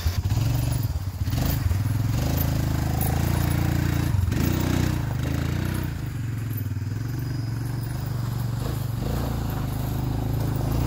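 ATV engine running steadily as the four-wheeler drives along a dirt road, its sound easing off a little in the second half as it moves away.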